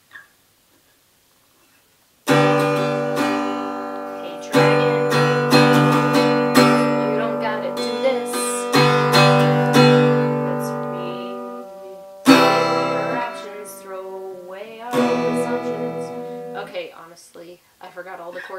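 Acoustic guitar strummed: after a short silence, a few chords struck a couple of seconds in and then again at intervals, each left to ring and fade before the next.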